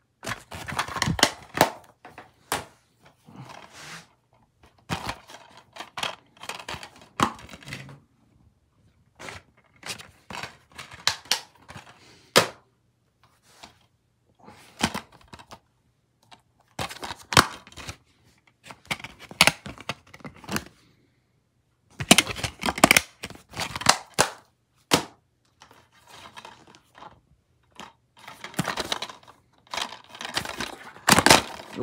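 Plastic DVD cases being handled: snapping open and shut and knocking against each other, in a string of sharp clicks and short clattering bursts with brief pauses between them.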